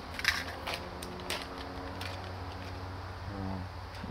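A few light clicks and rustles from paper seed packets being cut open and handled over a seedling tray, over a low steady hum.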